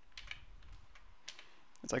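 Computer keyboard keys clicking: a few faint, scattered key presses.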